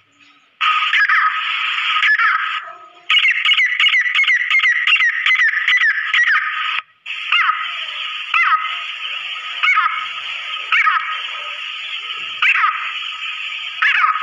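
Female grey francolin calling, first in a quick run of short notes that fall in pitch, then in single notes about once a second. A steady hiss with a constant thin tone runs under the calls, and the sound cuts out abruptly twice.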